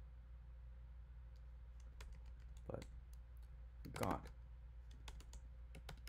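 Computer keyboard typing: scattered sharp key clicks starting about a second and a half in, over a steady low hum.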